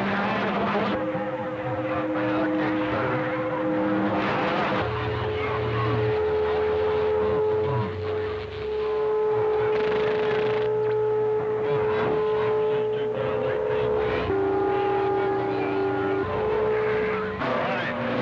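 CB radio receiving a crowded channel 6 at a strong signal: several steady whistling tones, heterodynes of carriers held keyed on the channel, over hiss and garbled voices. The tones change pitch a few times, about a second in, around five seconds in and again near the end.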